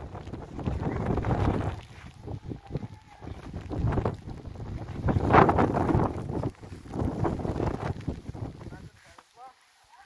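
Wind buffeting the microphone in irregular gusts, strongest about five seconds in, dying down near the end.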